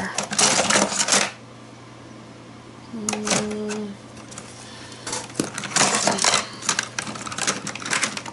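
Pattern-edged craft scissors clattering against one another as a hand rummages through a container of them: a bout of rattling, a lull with a brief low tone in the middle, then a longer bout of clattering.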